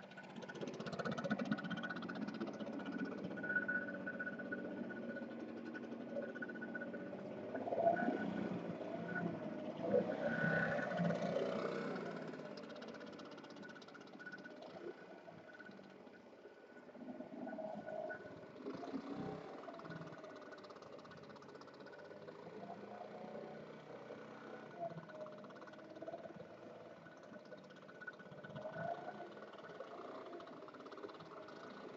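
Gas-powered backpack leaf blower running, its engine pitch wavering; it is loudest in the first twelve seconds, then drops off and swells again briefly a little later as the operator moves about.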